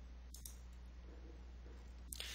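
Faint computer mouse click, two quick ticks close together about a third of a second in, over a low steady room hum.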